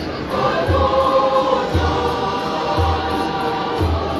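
A choir singing in harmony, holding long notes, with a deep drum beat about once a second.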